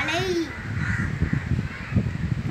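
A child's voice drawing out one syllable while reading aloud, its pitch dipping and rising, fading about half a second in and leaving low rumbling background noise.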